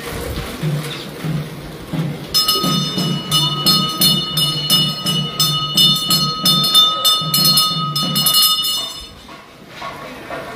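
Temple hand bell rung rapidly and continuously for about six seconds, its ringing tones held by the quick strokes, over a rhythmic low beat. The ringing starts a couple of seconds in and stops shortly before the end.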